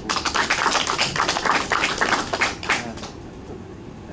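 Applause from a small group of people, irregular claps that thin out and die away about three seconds in.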